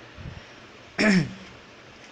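A man clears his throat once, briefly, about a second in, with a falling pitch.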